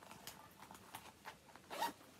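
Zip on a small fabric makeup pouch being pulled shut: a run of faint rasping ticks with a louder stroke near the end.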